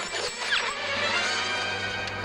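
Film soundtrack music mixed with mechanical action sound effects over a steady low hum.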